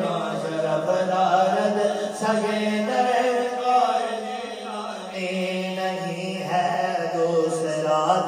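Male voices reciting a naat in a melodic chant into microphones, unaccompanied, the lead line rising and falling over a steady low drone held underneath.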